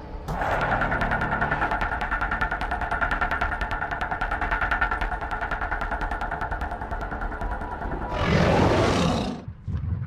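Tyrannosaurus rex roar sound effect: one long, steady roar lasting about eight seconds, then a shorter, louder roar about eight seconds in that cuts off just before the end.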